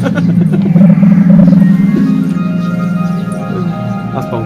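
Fruit machine playing its win music: long held notes over a steady low tone.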